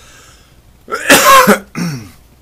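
A man coughing into his fist: one loud cough about a second in, then a shorter, quieter second cough just after it.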